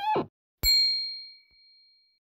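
A single bright, bell-like ding sound effect, struck about half a second in and ringing out as a clear high tone that fades over about a second and a half. Just before it, a short pitched sound that rises and falls in pitch ends.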